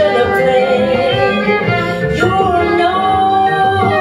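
Small jazz band playing live: a violin carries a held melody over acoustic guitar, piano and upright bass, with a woman singing.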